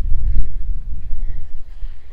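Wind buffeting the microphone: a loud, gusty low rumble that eases off a little toward the end.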